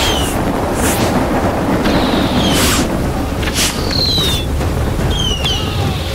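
Action-film sound effects: a dense, steady rushing noise, with a few sharp whooshes and several short falling whistle-like tones.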